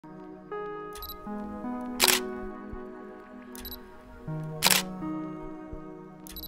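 Music of sustained, layered chords, with two loud camera shutter clicks, about two seconds in and again near five seconds in, each preceded about a second earlier by a fainter, higher click.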